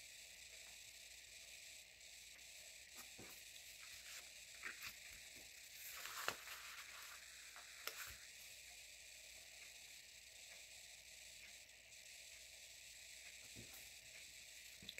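Near silence: a steady faint hiss, with a few soft ticks and rustles from craft tweezers lifting small stickers off a sheet and pressing them onto paper.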